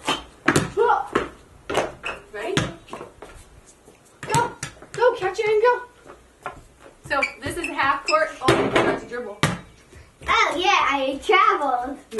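A basketball bouncing on a concrete slab several times at irregular intervals, mixed with bursts of a young child's voice.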